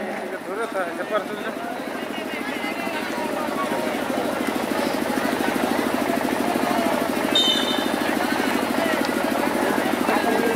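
A motor running with a fast, steady throb that grows louder over the first few seconds and then holds.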